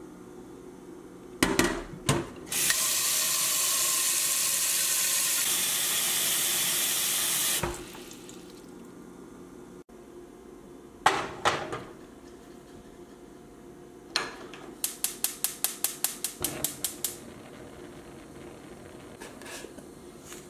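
Kitchen tap running into a stainless steel sink for about five seconds. Then, after a click, a gas stove's spark igniter ticks rapidly for about two seconds, and the burner lights with a low steady sound.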